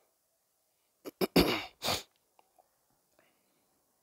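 A man sneezing about a second in: two quick catches of breath, then two loud bursts of noise.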